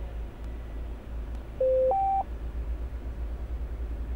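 A short two-note electronic beep, a lower tone stepping up to a higher one, lasting about half a second, a little over a second and a half in. Under it is the steady low rumble of the stationary car's idling engine.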